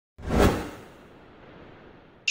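Whoosh sound effect for an animated logo intro: a sudden swoosh that peaks about half a second in, then fades away with a long trailing tail.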